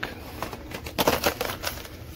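Hot Wheels cards in plastic blister packs clicking and clattering as they are flipped through and pushed along metal store pegs. The irregular clacks come thickest a little after the start.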